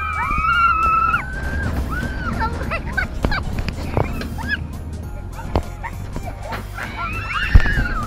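Roller coaster riders screaming: long high screams at the start and again near the end, with short shrieks and yelps between, over a steady low rumble of wind and the moving train.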